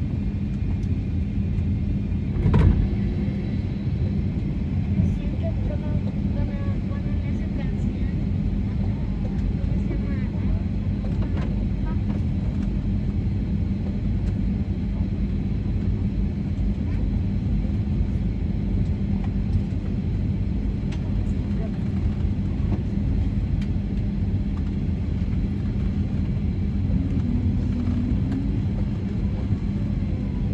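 Cabin noise in the aft cabin of a Boeing 757-300 taxiing: a steady low rumble from the engines at taxi power, with a constant hum. A single thump comes about two and a half seconds in.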